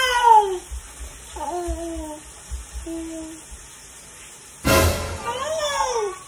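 Several short, high-pitched wordless cries, each gliding down in pitch, with a sharp knock about three-quarters of the way through.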